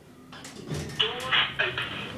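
Otis Gen2 elevator's voice announcer speaking through the car's small speaker, thin and cut off in the treble, over a low hum that starts a little before a second in.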